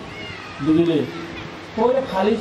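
A man speaking into a microphone: one short drawn-out syllable that bends up and down in pitch, with pauses either side and speech starting again at the end.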